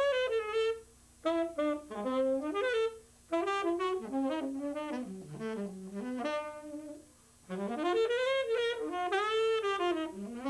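Unaccompanied saxophone playing improvised jazz phrases, one melodic line with sliding, bending notes, broken by short pauses about a second in, at about three seconds and around seven seconds.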